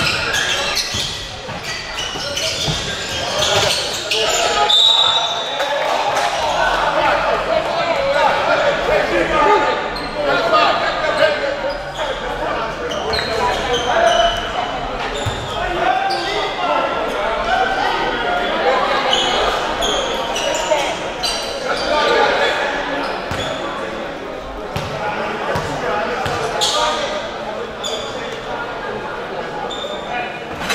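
A basketball bouncing on a hardwood gym floor among the thuds and squeaks of play, under the continuous chatter and shouts of spectators echoing around a large hall.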